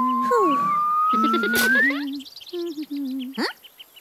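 Cartoon sound effects: a whistle glides slowly upward for about two seconds while a shorter one falls, over a low, wordless cartoon voice in short stepped notes. A sharp click comes about one and a half seconds in, and quick rising zips follow near the end.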